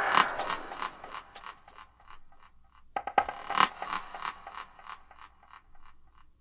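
The closing seconds of a progressive psytrance track after the beat has dropped out: a percussive electronic hit trails off in rapid echo repeats. A second hit about three seconds in decays the same way, fading almost to nothing by the end.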